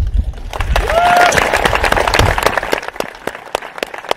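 Audience applauding, dense clapping that starts about half a second in and thins to scattered claps near the end. About a second in, one voice in the crowd gives a brief rising call.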